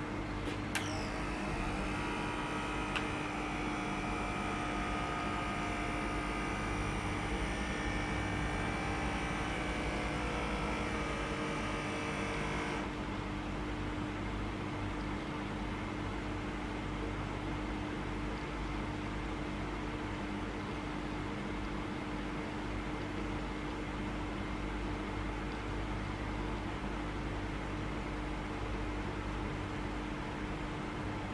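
Microlife A2 Basic automatic blood pressure monitor's air pump inflating the arm cuff at the start of a measurement: a steady motor whine that slowly falls in pitch for about 13 seconds, then cuts off suddenly. A steady low hum carries on underneath throughout.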